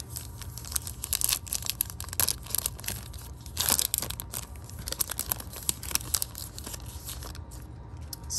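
A Panini Prizm trading-card pack's foil wrapper crinkling and being torn open by hand: a run of sharp crackles, with a longer, louder tear near the middle.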